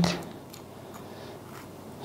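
Faint, soft scraping of a metal spoon working through the soft flesh and seed cavity of a Tashkent melon, with a few light ticks.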